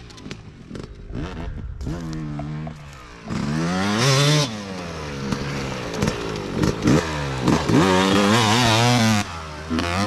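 Several small dirt bike engines revving and shifting as the bikes race past, their pitch rising and falling over and over. The engines are loudest about three to four and a half seconds in and again from about seven to nine seconds.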